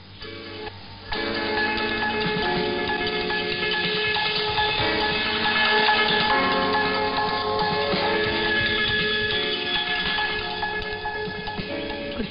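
Music from a Radio Thailand shortwave broadcast on 9940 kHz, received through a software-defined radio, with the narrow, band-limited sound of AM shortwave. It is quiet for about the first second, then comes in fully with held notes to the end.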